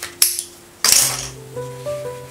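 Soft background music, with two sharp handling noises, the second one longer: a print being unclipped from a hanger's plastic clips and laid down on the table.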